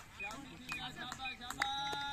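Faint, distant voices of people calling out across an open field, with a drawn-out steady call near the end.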